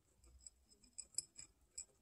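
Guinea pigs crunching dry pellet food from a ceramic bowl: about half a dozen small, sharp crunches over two seconds, the loudest just past the middle.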